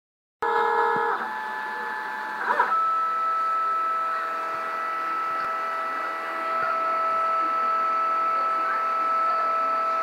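Delta 3D printer's stepper motors whining as the print head travels during an auto-calibration run. The whine starts abruptly about half a second in, shifts pitch twice in the first few seconds, then holds one steady high tone.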